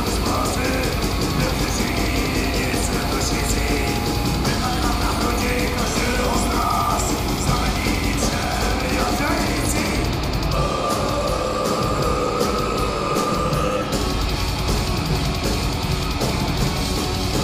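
A black metal band playing live, with distorted electric guitars and drums, heard from among the audience. About ten seconds in the cymbals drop away and a single held note carries for a few seconds, then the full band comes back in near the end.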